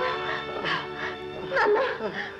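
Dramatic film background music with long held tones. A woman's anguished crying rises and falls over it, loudest near the end.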